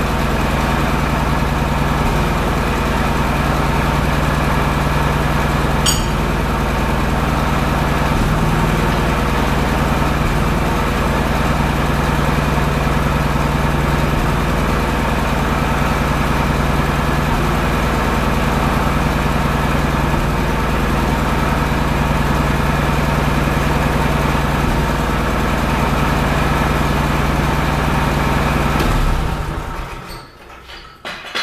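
Forklift engine idling steadily while it holds a suspended load, cutting off suddenly near the end.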